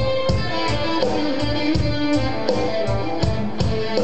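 Live band playing an instrumental passage: an amplified electric guitar line over bass and drums keeping a steady beat.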